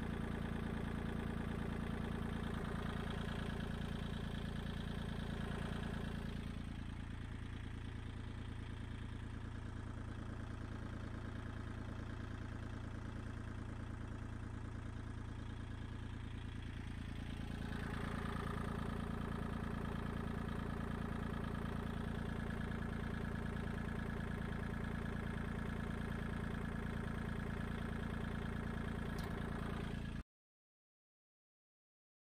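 Kubota L2501 compact tractor's three-cylinder diesel engine idling steadily. It runs a little quieter from about seven seconds in to about seventeen seconds in, then comes back up.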